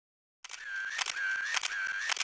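Camera shutter clicks, repeating about twice a second, with a steady high tone held between them. The sound starts suddenly about half a second in, after silence.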